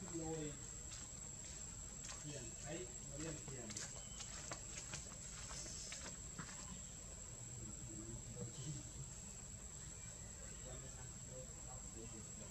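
Faint voices talking in the background, with scattered soft clicks and a steady high-pitched whine.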